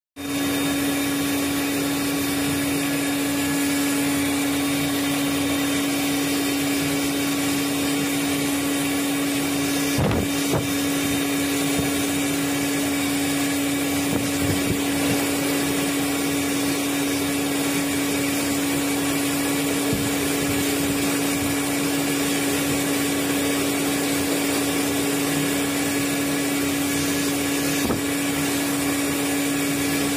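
Pet blow dryer running steadily on a dog's coat: a constant rush of air with a steady hum.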